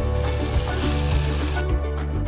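Beef searing in hot oil in a pan, sizzling steadily for about a second and a half and then cutting off suddenly, over background music.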